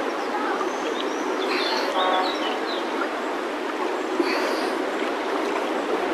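River water splashing and rushing at the surface right around a camera carried by a swimmer drifting down a fast-flowing river, a steady watery hiss, sped up to double speed. A few short high chirps sound over it in the first half.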